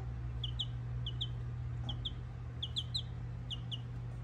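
Baby chick, about nine or ten days old, peeping: short high peeps, mostly in twos, a pair a little under every second.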